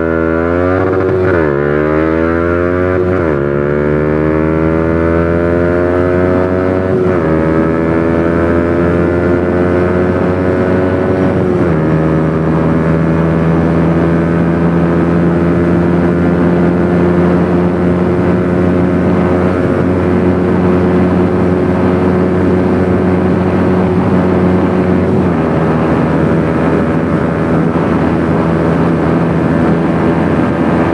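Yamaha R15 V3's 155 cc single-cylinder engine at full throttle, accelerating hard up through the gears. Each upshift is a quick dip followed by a rising pitch. The shifts come about a second in, then near 3, 7 and 12 seconds. After that the pitch climbs only slowly at high speed, with one last shift into top gear near 25 seconds.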